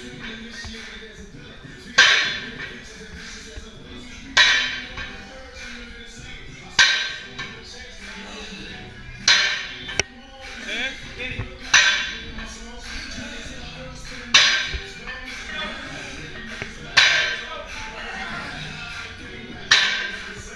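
Trap-bar deadlift reps: the loaded hex bar's iron plates touch down on the rubber gym floor with a metallic clank and rattle about every two and a half seconds, eight times, over steady background music.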